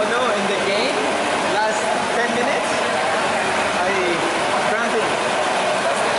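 Whirlpool tub jets churning the water in a steady rush, under indistinct men's voices talking.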